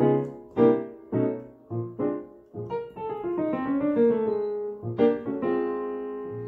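Piano sound from a synthesizer workstation keyboard: a few struck chords, then a quick descending run on a B flat dominant chord built from the B flat bebop dominant scale, ending on a held chord near the end.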